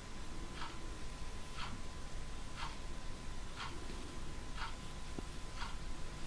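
A clock ticking steadily, one tick each second, over a faint steady high-pitched hum.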